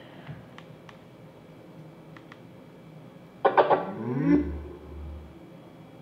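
A JBL Charge 3 portable Bluetooth speaker plays its power-on sound about three and a half seconds in: a short rising start-up riff with a deep bass note underneath, which then fades. Before it come a few faint clicks as the speaker is handled and its button is pressed.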